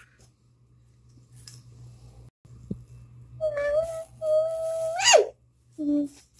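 Near quiet for about three seconds, then a child's voice holds a high sung note twice and ends in a quick swoop sharply up and back down.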